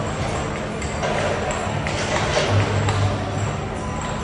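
Background music with a low bass line of held notes, with voices mixed in underneath.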